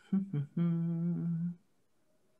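A person humming with closed lips: two short hums, then one hum held steady in pitch for about a second.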